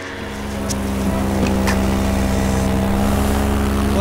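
Paramotor engine and propeller running steadily in flight, a constant drone that grows louder over the first second and then holds at an even pitch.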